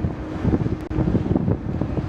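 Wind buffeting an outdoor microphone: an uneven, gusting low rumble.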